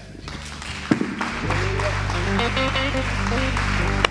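Congregation applauding as the church band begins to play: a sustained low chord comes in about a second and a half in, with a few single notes stepping above it.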